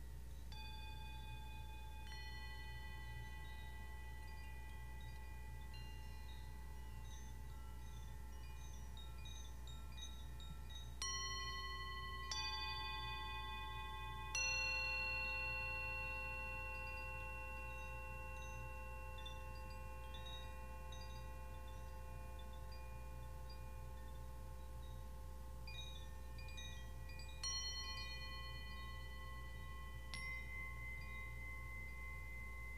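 Small metal chimes struck one note at a time, each ringing on for many seconds with bright overtones. Soft strikes come in the first seconds, then three louder ones about eleven to fourteen seconds in, the third the loudest, and another near the end. A steady low hum sits underneath.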